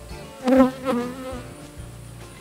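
Honeybees buzzing close by as a frame is worked from an open hive, one bee passing near loudly about half a second in and again near one second, with a slight shift in pitch.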